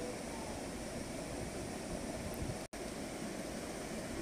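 Steady background hiss with no clear source, cut by a split-second dropout to silence about two-thirds of the way in.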